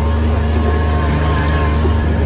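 Kubota RTV 900's three-cylinder diesel engine running steadily under load, a loud even drone, as the utility vehicle's wheels spin in a sandy hole.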